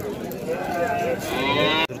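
A calf mooing: one bawl rising in pitch through the second half, cut off suddenly just before the end.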